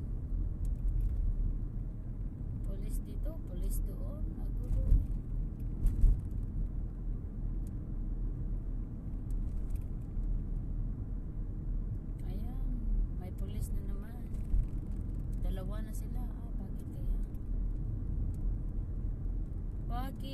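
Steady low road and engine rumble of a car driving, heard from inside its cabin, with two brief louder thumps about five and six seconds in.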